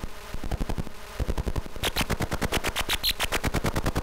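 Harsh pulsing electronic noise from home-built synthesizer circuits: a rapid train of sharp clicks at roughly a dozen a second. It is duller and sparser for the first couple of seconds, then turns brighter with hissy high bursts.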